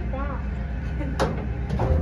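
Old traction elevator car travelling in its shaft: a steady low hum from the hoist machinery, with a sharp click about a second in and a click and low thump near the end as the car comes to a stop.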